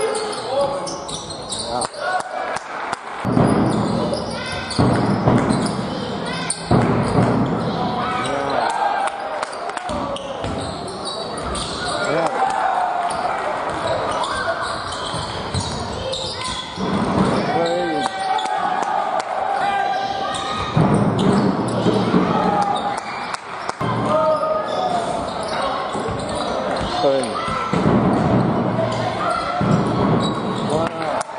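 Live basketball game sound in an echoing sports hall: the ball bouncing on the hardwood court, sneakers squeaking, and players and spectators calling out indistinctly.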